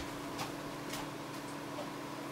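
Faint, regular clock-like ticking, about one tick a second, over a steady low hum.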